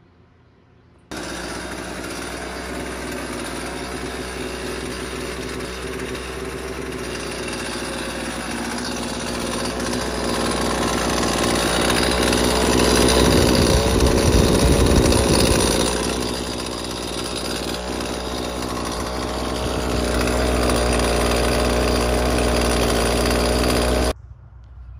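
Husqvarna 128LD string trimmer's two-stroke engine running steadily, coming in about a second in and getting louder around the middle, dipping briefly about two-thirds through, then louder again near the end. It runs without bogging down or dying, after a new spark plug and a carburetor tune.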